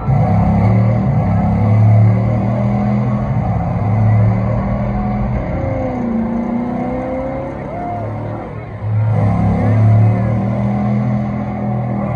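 Car engine sound played loud over an arena sound system: a deep steady rumble that starts suddenly, eases off in the middle with a short rising rev, and comes back loud about nine seconds in.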